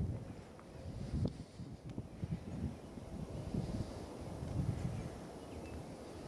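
Wind buffeting the microphone outdoors: an uneven low rumble that surges and drops every second or so.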